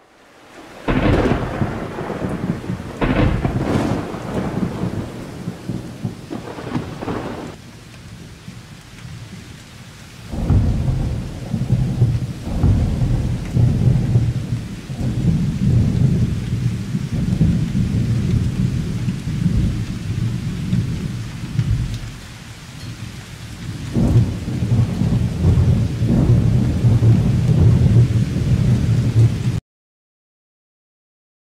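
Thunderstorm: several sharp thunderclaps in the first few seconds, then long, heavy rolling thunder over steady rain.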